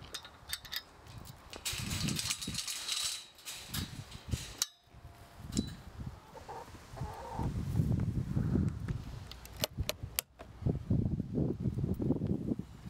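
A metal chain clinking on a wire gate as it is unhooked, followed by footsteps on dry ground and handling noise.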